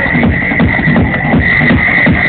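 Loud, fast techno over a large party sound system: a driving kick drum with a high synth tone pulsing on and off. The recording is muffled, with nothing above the upper mids.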